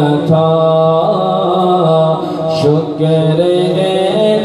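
A man chanting devotional verse solo in long, held melodic notes that step up and down in pitch, with no instrument.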